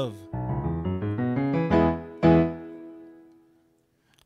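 Piano played: a quick run of notes ending on a final chord struck about two seconds in, which rings out and fades away, closing the song. A sung note trails off at the very start.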